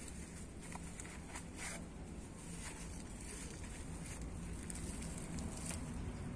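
Faint crumbling and small scratchy ticks of potting soil being picked away by hand from a Sancang bonsai's root ball to expose the roots.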